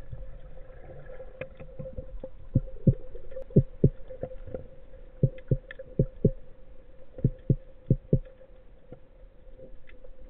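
Underwater sound through a camera housing during a spearfishing dive: a steady hum with seven pairs of dull low thumps in a quick double beat, starting a couple of seconds in and stopping near the end.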